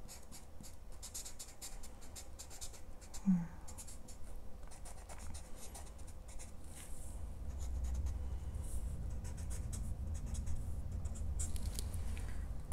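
Alcohol marker (Arrtx) scrubbed quickly back and forth on paper, a fast run of soft scratchy strokes as a second coat of yellow is laid over the flowers. A brief vocal sound comes about three seconds in.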